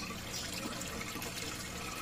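Steady trickle of running water.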